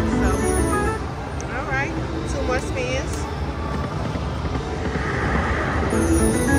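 Dancing Drums slot machine playing its free-spin bonus music and spinning-reel sound effects, with short rising and falling chimes, over the chatter of a casino floor.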